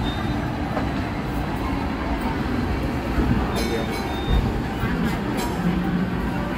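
Hong Kong double-decker tram running along its tracks, heard from inside on the upper deck: a steady rolling rumble with a few short clicks in the second half.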